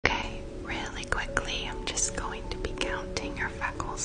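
A woman whispering close to the microphone, with frequent short sharp clicks between her words and faint steady tones underneath.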